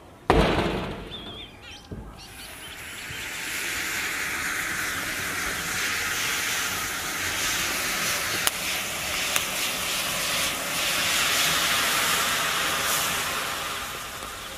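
A match is struck and flares, then a glass of potassium nitrate and sugar rocket fuel catches and burns with a steady hiss that builds over a couple of seconds and runs on for about ten seconds, with two sharp pops partway through.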